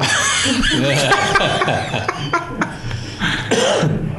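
Several people laughing and talking over one another, with a few short sharp sounds among the voices.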